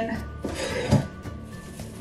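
Plastic wrap crinkling as it is pulled and handled, with a soft thump about a second in. Quiet background music plays underneath.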